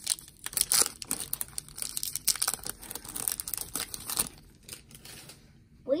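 Wrapper of a Topps baseball card pack crinkling and tearing as it is ripped open by hand, a dense run of sharp crackles that stops about four seconds in.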